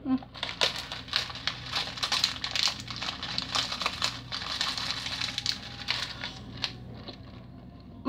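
Plastic Skittles candy bag crinkling as it is squeezed and tipped up over the mouth, an irregular run of crackles that thins out near the end.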